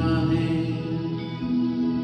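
A man singing a slow Hindi film song into a handheld microphone over a musical accompaniment, holding long sustained notes.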